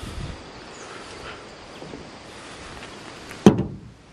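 Rustling of someone walking through tall weeds with light outdoor wind, then one sharp knock near the end.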